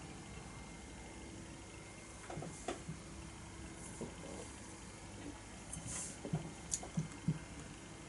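Faint sipping, swallowing and mouth sounds from a person tasting beer, with a scatter of soft clicks and a light tap as a stemmed glass is lowered and set down on a cloth-covered surface, over a steady low room hum.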